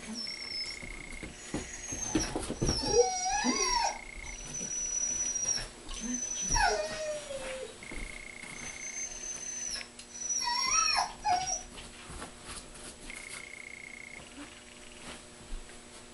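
A large long-haired dog whining in three high-pitched bouts whose pitch slides up and down, about two seconds in, about six seconds in and about ten seconds in.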